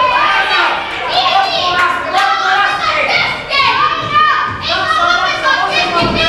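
Several voices of people around a boxing ring shouting and calling out over one another in a large hall, some of them high-pitched.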